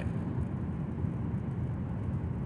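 Steady low rumble of car cabin noise, engine and road, with no other events.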